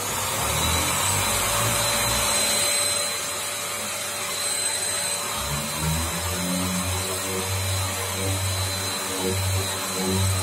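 Yokiji KS-01-150-50 brushless electric random orbital sander with a 150 mm pad, coming up to speed at the start and then running steadily while sanding a car door panel. It makes a steady motor whine over the rasp of the abrasive disc, with a low drone that wavers as the pad is pressed and moved.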